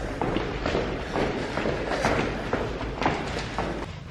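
Footsteps of a person walking at a steady pace, about two steps a second.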